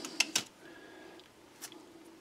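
A few faint, small clicks and taps from a toothbrush being dabbed in paint and handled, three short ticks over a faint steady hum.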